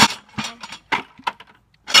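Metal camper jack stands clinking and clanking against each other as they are lifted out of a plastic bucket: a few sharp, separate knocks in quick succession.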